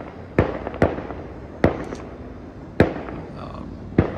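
Fireworks going off in the neighbourhood: four sharp bangs at irregular intervals, each with a short echo.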